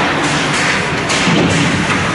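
A few dull thuds and knocks over the steady, echoing noise of an indoor ice hockey rink during play.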